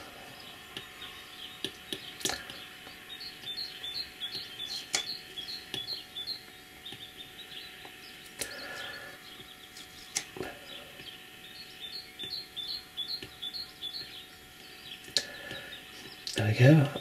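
Faint, scattered clicks and light scratching of an Apple Pencil's plastic tip on the iPad Pro's glass screen as a cartoon face is sketched, over a low steady room hum. Two runs of quick, high chirping come in a few seconds in and again near the end.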